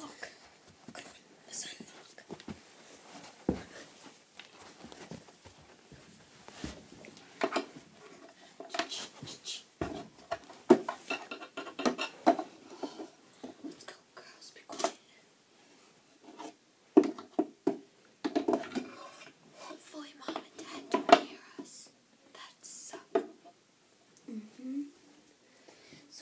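Plastic model horses being handled and moved by hand, giving a scatter of light clicks, knocks and rubbing sounds, with soft whispering in places.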